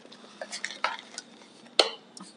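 Light clicks and rustles of a cardboard box and its plastic contents being handled, with a sharper click a little before the end.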